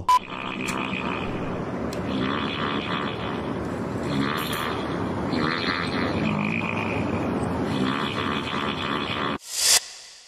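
Novelty bagpipe-like wind instrument, a blowpipe feeding bulging organ-shaped bags, playing a raspy, wavering run of notes that sounds like a fart. A short loud burst of noise near the end.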